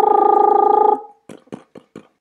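A loud, steady buzzing tone lasting about a second, which stops abruptly; a few faint clicks follow.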